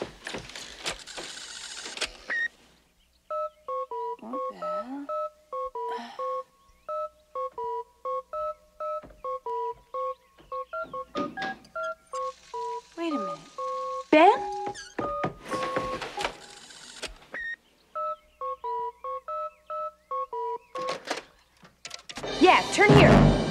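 Telephone keypad touch-tones pressed one after another to pick out a tune, a few short two-note beeps a second stepping up and down in pitch. They play back from an answering-machine tape, with bursts of hiss between the phrases.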